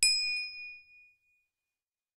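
A single bright bell ding, the notification-bell sound effect of a subscribe animation, struck once and ringing out to fade over about a second and a half.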